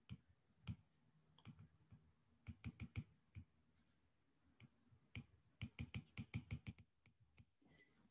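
A stylus tip tapping and clicking on a tablet's glass screen during handwriting: faint, sharp clicks in quick clusters, the busiest about two and a half to three and a half seconds in and again from about five to seven seconds.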